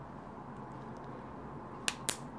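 A single sharp plastic click near the end, as a coin-cell battery is pressed flat into the battery compartment of a Cateye Strada Wireless bike computer, over a faint steady background hiss.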